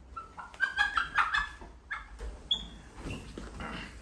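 A domestic hen squawking as she is handled and lifted: a quick run of short, loud calls in the first two seconds, then a single brief high note.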